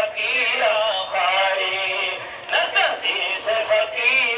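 A man singing a devotional ghazal with musical accompaniment.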